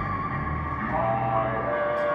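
Live electronic music: layered sustained keyboard tones over a low bass note, the upper notes changing about a second in.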